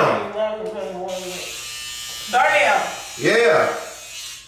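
Electric hair clippers running with a steady buzz during a haircut, with voices breaking in over them at the start and about two and three seconds in.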